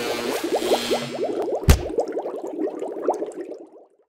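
Intro title music and sound effects: a fast run of short bubbling chirps with one sharp crack about 1.7 s in, fading out near the end.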